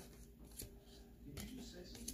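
Faint rustle of baseball cards being thumbed through a hand-held stack, with a few soft slides of card over card.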